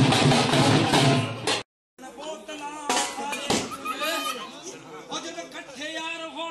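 Several dhol drums playing a bhangra beat, which cuts off abruptly about a second and a half in. After a brief silence, people's voices take over, talking without the drums.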